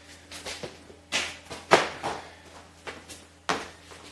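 Footsteps and heavy thuds on a concrete garage floor from a person moving through a burpee: sharp landings about a second in, just before two seconds in (the loudest) and about three and a half seconds in, with lighter knocks between them. A steady low hum runs underneath.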